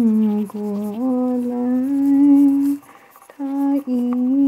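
A woman humming a slow tune with her mouth closed, holding long notes that step up and down in pitch, with a short break about three seconds in.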